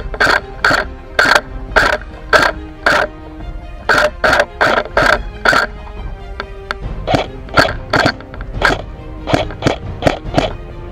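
Background music with sharp percussive hits about twice a second over sustained held notes. The hits come in runs with short breaks between them.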